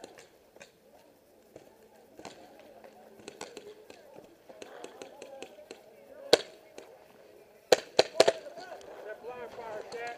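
Paintball marker shots: one sharp crack about six seconds in, then three quick cracks about a second later. Faint shouting voices carry on underneath.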